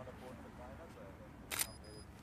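A single camera shutter click about one and a half seconds in, followed by a faint high tone. Faint voices murmur in the background.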